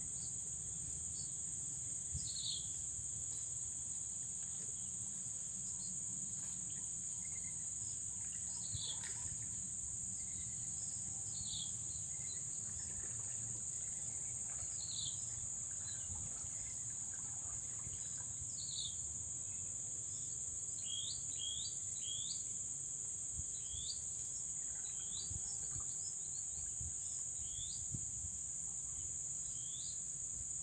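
Steady high-pitched insect drone, with short falling bird chirps every few seconds that come several in quick succession near the end.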